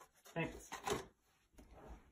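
Faint handling of cardboard packaging, a product box and its insert being lifted and moved, with a few short scrapes and knocks in the first second.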